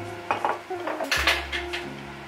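A few sharp clinks and knocks of a drinking glass and utensils on a kitchen countertop, the loudest cluster just over a second in.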